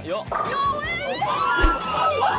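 Excited shouting and cheering over background music, with a high rising whistle-like glide and a single heavy thud about one and a half seconds in.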